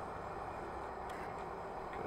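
Steady outdoor background noise, an even hum with no distinct event, typical of distant street traffic.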